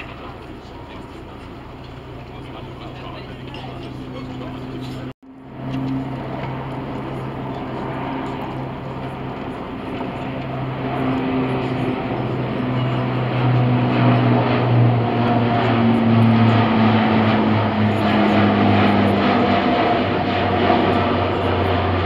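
Lockheed C-130 Hercules four-engine turboprop approaching and passing low overhead: a steady propeller drone with a low hum that grows steadily louder. The hum drops slightly in pitch as the aircraft goes by. The sound cuts out briefly about five seconds in.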